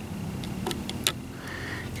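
A quiet pause with a few faint light clicks about halfway through, over a low steady hum.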